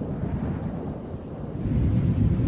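Low, noisy rumble swelling in at the opening of the track, growing louder near the end.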